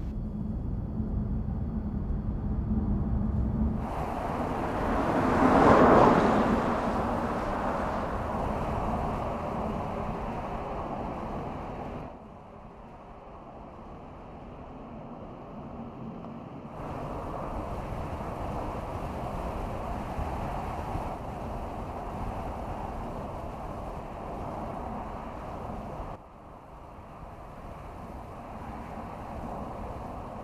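All-electric Mercedes CLA driving on a road: tyre and wind noise with no engine note. It steps up and down in level at each change of shot and swells loudest about six seconds in. A steady low hum sits under the first few seconds.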